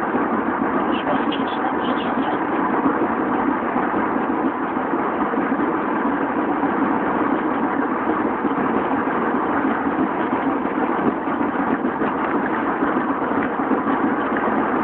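Steady road noise inside a car cabin as the tyres run over the worn concrete slabs of a motorway, with the car's engine running underneath.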